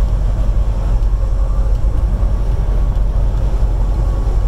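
Steady low rumble of a semi truck's engine and tyres heard from inside the cab while cruising at highway speed.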